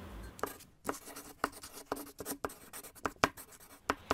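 Chalk writing on a blackboard: a quick run of short, irregular scratchy strokes, as in spelling out a word.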